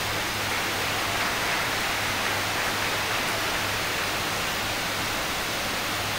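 Steady hiss with a low hum beneath it: background room and recording noise, with no distinct events.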